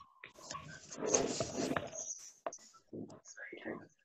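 Faint, indistinct voices and breathy murmuring over a video-call connection, with a few short clicks.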